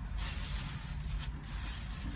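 Plastic takeout bag rustling and crinkling as hands open it and handle the box inside, with a few faint clicks, over a low steady rumble.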